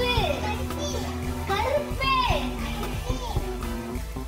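A young child's high voice speaking in short gliding phrases, with other children's voices behind it, over steady background music.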